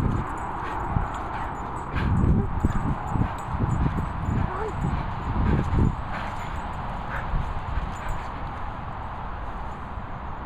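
Old Staffordshire bull terrier making its excited 'laughing' vocal noises and breaths right at the microphone, in a run of irregular bursts over the first six seconds, then quieter.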